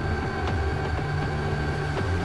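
Electronic soundtrack music with a deep, steady bass line and light ticking percussion.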